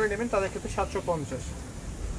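A man's voice speaking for about the first second and a half, then only steady low background noise.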